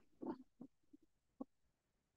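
Near silence over gated video-call audio, broken by a brief low vocal sound just after the start and a few faint short knocks.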